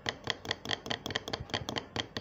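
A fork beating raw eggs in a plastic bowl, its tines clicking against the bowl in quick, even strokes, about five or six a second.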